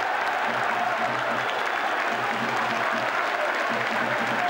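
Football stadium crowd cheering and applauding a home goal, steady throughout.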